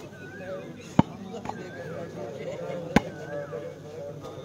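Hand strikes on a shooting volleyball: two sharp smacks about two seconds apart.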